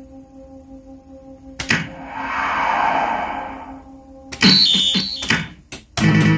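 Hokuto no Ken pachislot machine in play between music cues: a steady low hum, a click, a swelling hiss-like sound effect, then a quick run of clicks with short high beeps as the reel stop buttons are pressed and the spinning reels halt.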